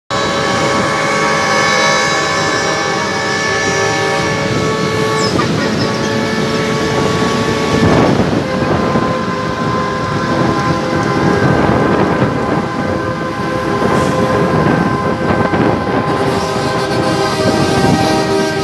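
Semi-truck air horns blowing long, overlapping chords, with the horns changing as each truck drives by. Diesel truck engines run underneath.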